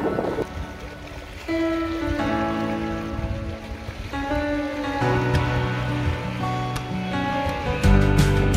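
Background music: slow, sustained chords that change every couple of seconds, without a beat, until percussion comes back in right at the end.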